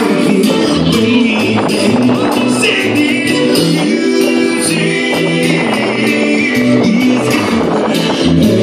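Live reggae band playing through a stage PA: a moving bass line under keyboard chords, with a steady drum and percussion beat.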